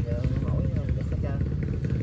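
An engine running steadily, a low rumble under an old man's talking voice.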